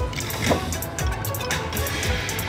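Electronic game music and reel-spin sound effects from a casino video slot machine, with a busy background din.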